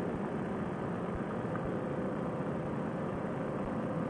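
Paratrike's paramotor engine and propeller running steadily in cruising flight, a dull, muffled drone with no change in pitch.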